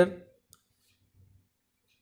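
A man's spoken word trailing off, then a quiet pause broken by one faint, short click about half a second in.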